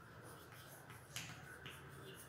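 Chalk tapping on a blackboard while writing: a few faint clicks, the sharpest just over a second in.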